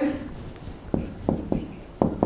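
Marker pen drawing on a whiteboard: a few short strokes about a second in, with faint squeaks, as parallel lines are drawn and labelled.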